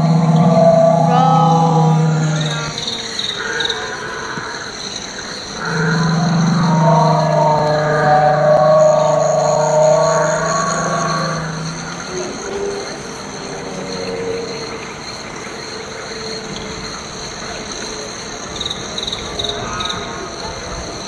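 Recorded sauropod call from an animatronic dinosaur's loudspeaker: two long, low calls. The first fades about three seconds in; the second runs from about six to twelve seconds in.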